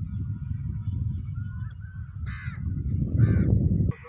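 A bird gives two short, harsh caws, about two and a half and three and a quarter seconds in, over a strong, uneven rumble of wind on the microphone.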